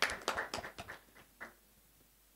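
A small group clapping, a scattered applause that thins out and stops about a second and a half in.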